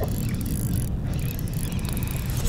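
Wind buffeting the microphone, heard as a steady, uneven low rumble.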